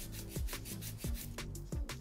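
Hand nail file rubbing in repeated strokes along the side wall of a gel nail, over soft background music.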